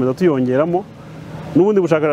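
Speech only: a voice speaking Kinyarwanda, with a pause of about a second in the middle.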